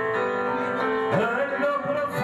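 Male voices singing into microphones over instrumental accompaniment, with a note held steady for about the first second before the melody moves on.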